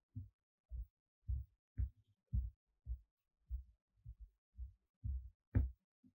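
Soft low thuds in a steady rhythm, about two a second, with nothing else sounding between them.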